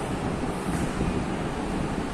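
Steady rushing background noise with no distinct events, like wind across the microphone.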